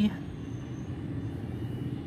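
A steady low rumble in the background, with no distinct strokes or events, and the end of a sung word at the very start.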